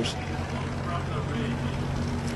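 Steady low mechanical drone with a hum of a few steady low tones, holding level throughout.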